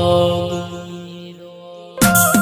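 The close of a devotional bhajan: the held notes of the music and chant fade away steadily over the two seconds.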